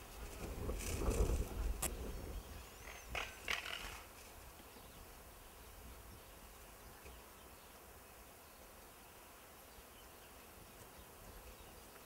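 A low rumble with a few sharp knocks in the first few seconds, then a faint steady outdoor background.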